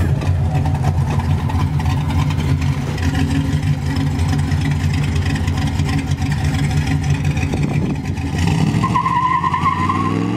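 A Chevrolet C10 pickup's V8 engine running steadily at a low, even pitch. Near the end a high, wavering squeal rises over it as the tyres start to break loose for a burnout.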